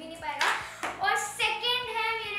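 A brief swish about half a second in, then a young girl's voice in a sing-song, over quiet background music with a steady beat.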